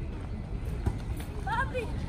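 Outdoor ambience of people on a busy park path: scattered voices of passersby over a steady low rumble, with a brief voice about a second and a half in.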